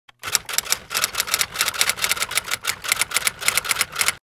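Typewriter keys clacking in a fast, uneven run of strikes, about eight a second, starting a moment in.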